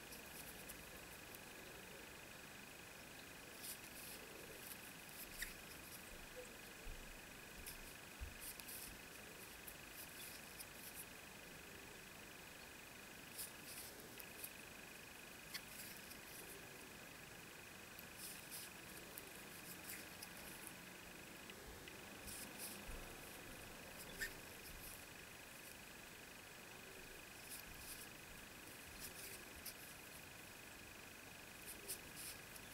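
Faint, scattered soft ticks and rustles of a crochet hook drawing thread through loops while working a crab-stitch edging, over a steady faint high-pitched whine.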